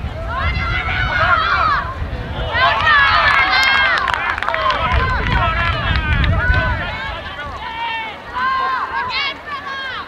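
Spectators and players shouting and calling out during live play, many high voices overlapping at once, loudest about three seconds in and easing off near the end.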